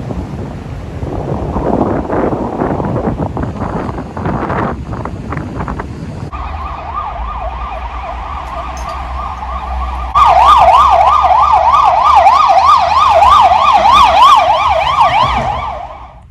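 Sea surf and wind noise for the first few seconds. Then an emergency vehicle siren sweeps rapidly up and down, a few cycles a second, and turns much louder about ten seconds in before fading away near the end.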